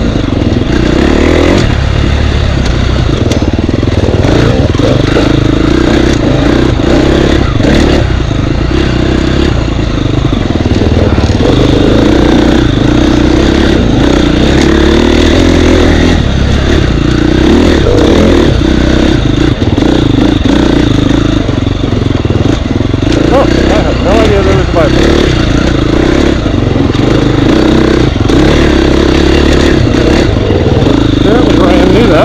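Husqvarna enduro dirt bike engine running under load, its revs rising and falling continuously as the rider throttles along tight, rooty single track.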